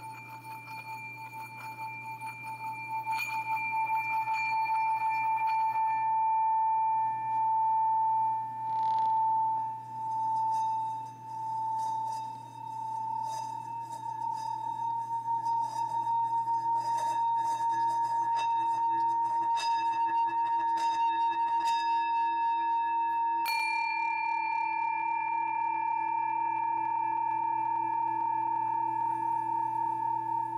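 Singing bowl sung by rubbing a wooden stick round its rim: one long ringing tone that builds over the first few seconds and pulses slowly in loudness for a while. About 23 seconds in a bowl is struck, adding new higher and lower notes to the ring.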